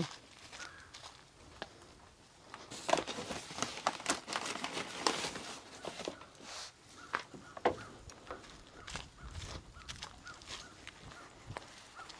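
Footsteps on dry leaves and dirt: a scattering of light crackles and rustles, busiest in the middle of the stretch.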